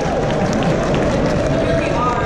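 A man's voice speaking over a public-address system in a large echoing hall, blurred by the room, with a background of audience murmur.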